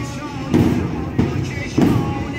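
A noha, a Shi'a mourning chant, sung over a steady beat of heavy thumps, three of them about two-thirds of a second apart, keeping time for the mourners' chest-beating.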